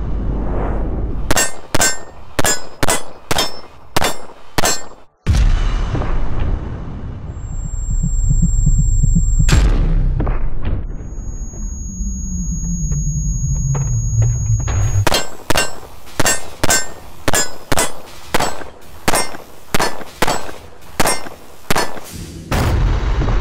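Shots from a 1911 pistol, the Wilson Combat Vickers Elite. A quick string of about eight shots comes in the first few seconds. In the middle there is a stretch of low rumble with a falling tone, and near the end a longer, steady string of fast shots follows, about two a second.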